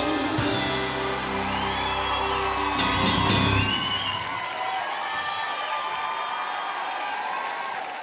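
The last bars of a live pop song with band ending about four seconds in, giving way to studio audience applause and cheering with whoops.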